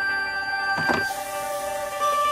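Background music with steady tones. About a second in comes a short clunk as the top tier of a stainless steel steamer is lifted off, followed by a hiss that lasts almost a second.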